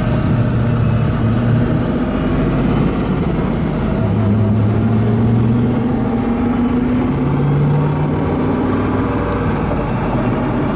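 Car engine and road noise heard from inside the cabin while driving at speed: a steady loud drone, with a low engine note that comes and goes and slowly rises in pitch.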